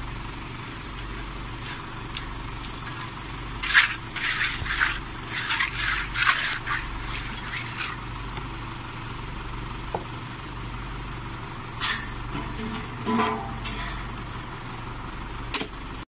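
A site engine runs steadily in the background, with bursts of a steel trowel scraping and patting wet footing concrete, mostly a few seconds in and again near the end.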